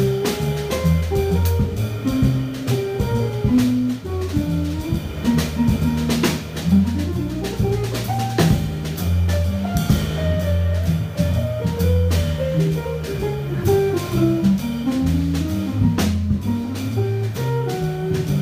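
Jazz trio playing: a hollow-body archtop electric guitar picks single-note melodic lines over an electric bass line and a drum kit keeping time with cymbals and drums.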